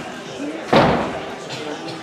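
A gymnast's pommel horse dismount landing on the mat: one loud thud about three quarters of a second in, fading briefly in the large hall, over background chatter.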